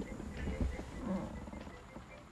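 A young man's faint, short groan of frustration about a second in, over low background rumble.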